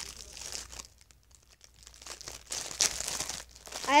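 Plastic packaging crinkling as it is handled, in two spells with a short quiet gap between.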